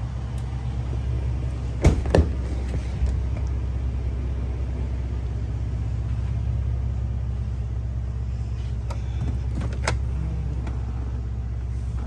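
Twin-turbo 3.5 EcoBoost V6 of a Lincoln Navigator idling with a steady low hum, heard through an open door. Two sharp clicks come about two seconds in, with a lighter one just after and another near the end.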